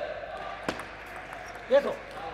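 A single sharp tap of a table tennis ball about a third of the way in, followed near the end by a player's loud shout of "yes" echoing in the hall.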